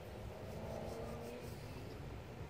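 2004 Lasko Weather Shield box fan running, a steady low whoosh of moving air.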